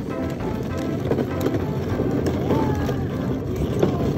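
Hard plastic wheels of a toddler's ride-on push car rolling over a concrete sidewalk, a steady rough rumble, as background music fades out in the first half-second.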